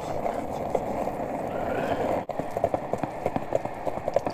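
Running footfalls on pavement as a person jogs with a husky on a chain leash: a quick series of sharp steps, several a second, after a brief dropout about two seconds in. Wind rushes on the microphone before the dropout.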